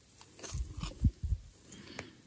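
Hands working metal knitting needles and yarn: a few soft low thuds and faint clicks and rustles, bunched between about half a second and a second and a half in.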